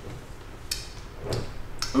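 A man drinking coffee from a glass: quiet swallowing with three faint small clicks of mouth and glass, about half a second apart in the second half.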